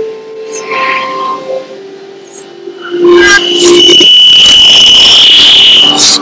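Improvised live music: steady droning notes, then about three and a half seconds in a loud, shrill held tone over harsh noise that cuts off suddenly.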